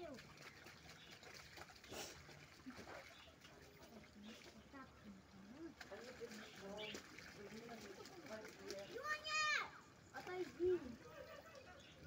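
Faint children's voices talking, with a short, higher-pitched call about nine seconds in.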